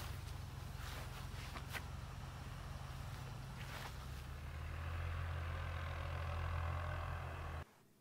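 Low steady hum with a faint even hiss over it, growing a little louder about halfway through and cutting off suddenly just before the end, with a few faint clicks.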